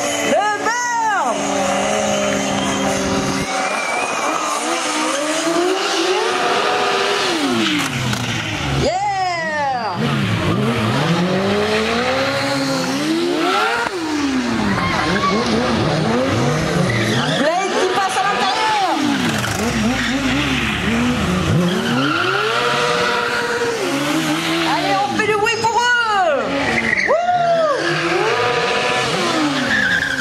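Stunt motorcycle engines revving hard, the pitch rising and falling again and again, with tyre squeal as the rear tyres are spun in smoky burnouts to warm the cold tyres.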